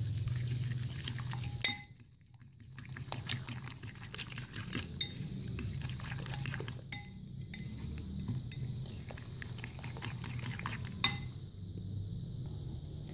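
A fork beating raw eggs with chopped vegetables in a bowl, in quick, repeated clinks of the fork against the bowl, with a short pause about two seconds in.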